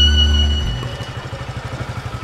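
Film-score strings stop a little over half a second in. They leave a scooter engine idling with a rapid, even putter.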